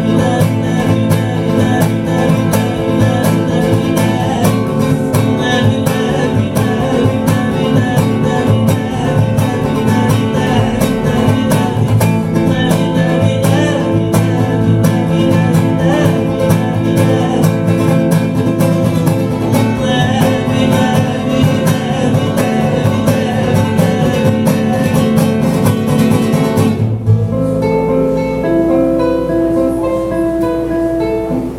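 Acoustic guitar played live with fast, steady strumming of full chords; about 27 seconds in the strumming stops and a few single notes are picked and left to ring.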